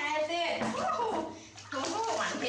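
Water splashing and sloshing in a metal washbasin as a baby macaque is washed by hand, under a woman's voice talking.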